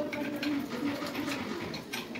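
A bird cooing in short repeated low notes, with a few light metallic clicks from an open-ended spanner tightening the nut of a braided steel water hose on a pipe fitting.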